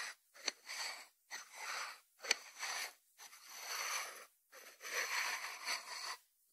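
A lidded white ceramic salt dish being turned and slid by hand on a wooden board: a series of rasping scrapes, each under a second with short pauses between, and a sharp click about two seconds in.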